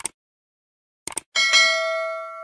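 Sound effect for a subscribe animation: short mouse-like clicks at the start and again about a second in, then a bell ding that rings on and slowly fades.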